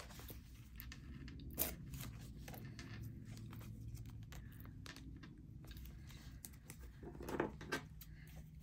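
Washi tape being handled at the fingertips: faint paper crinkles and small ticks, with one sharper tick under two seconds in and a louder run of crinkling near the end as the tape is pulled to tear it and does not rip.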